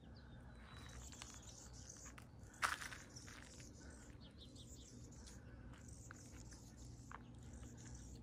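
Small birds chirping faintly, short high calls repeating throughout over a low steady background rumble, with one sharp click about two and a half seconds in.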